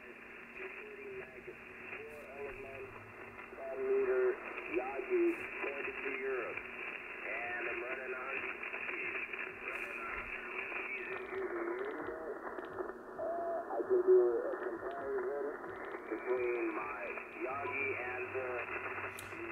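Icom IC-705 transceiver receiving single-sideband voice on the 10-metre band: thin, band-limited speech from distant stations over a steady hiss of band noise, which the operator puts down to interference from his off-grid solar setup. The audio turns duller for a few seconds in the middle.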